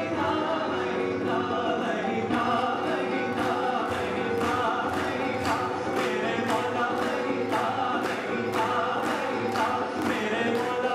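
Live acoustic band performance of a Sufi-style Hindi song: two male vocalists singing over acoustic guitar, keyboard, harmonium and hand drums. From about two seconds in, a steady beat of about two strikes a second runs under the singing.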